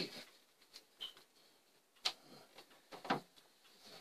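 A few faint clicks and knocks, at about one, two and three seconds in, as the wooden lid of a Symphonion disc music box is lowered and shut.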